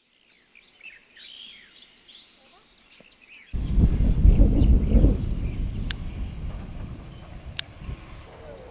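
Small birds chirping, then about three and a half seconds in a sudden loud low rushing noise on the microphone that slowly fades. Two sharp clicks come near the end.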